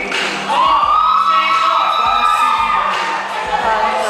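Live pop song performance: a backing track with a steady beat, and a high voice that rises about half a second in, holds one long note and falls away near the end.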